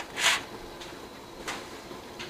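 Metal kitchen tongs handling a steamed artichoke: a brief rustling scrape as it is set down in a disposable aluminium foil pan, then a single light click about a second and a half in.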